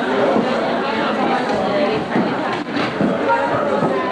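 Many people talking at once, a steady hum of overlapping crowd chatter with no single voice standing out.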